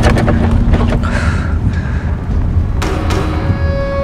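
Dramatic background score with a heavy low rumble and a few percussive hits; a sharp hit near three seconds in brings in long held tones.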